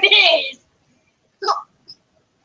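A person's voice talking, cut off about half a second in. Then near silence, broken by one short vocal sound about a second and a half in.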